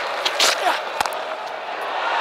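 Sharp knock of a cricket bat hitting the ball about a second in, with a couple of lighter knocks just before it, over the steady noise of a stadium crowd.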